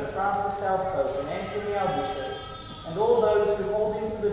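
A choir singing a hymn, the voices holding long notes and moving from pitch to pitch, with a short breath near the middle before the next phrase comes in louder.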